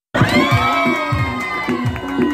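A group of children shouting and cheering together over party music with a steady beat, starting just after a brief silent break at the very beginning.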